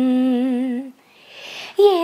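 A woman's voice humming a long held note with a slow vibrato, unaccompanied. It ends about a second in, followed by a soft breath, and she starts singing again near the end.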